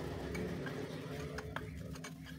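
Stone pestle grinding fried peanuts with chilli, garlic and salt on a flat stone mortar, giving quiet, irregular clicks and crunches of nut grit against the stone.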